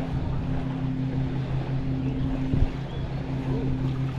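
Small boat's motor running steadily at low speed, a low even hum, with wind noise on the microphone. A single knock about two and a half seconds in.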